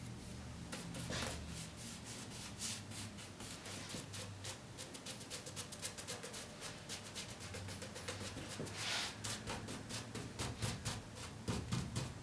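Paintbrush bristles scrubbing milk paint onto the white oak spindles of a Windsor chair: a quick, steady run of short scratchy strokes, with a few louder strokes near the end.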